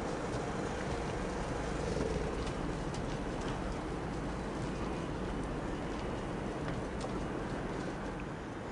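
Steady background noise with a low rumble and a few faint clicks.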